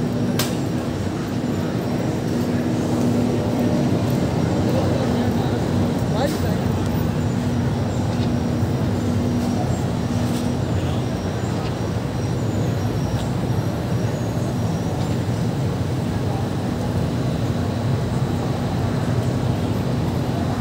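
Busy city street ambience: a steady wash of car and motorbike traffic with passers-by talking in the background. A steady low hum runs through the first half and stops about halfway.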